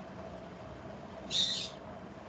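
A single short high-pitched chirp about a second and a half in, over a steady low hum.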